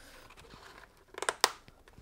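Padded liner being pressed back into a motorcycle helmet: a brief burst of rustling and a few sharp clicks a little over a second in.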